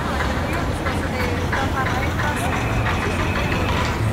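Busy street-crossing ambience: many people talking in a crowd over the steady low hum of vehicle engines in traffic. A steady high tone sounds through the middle.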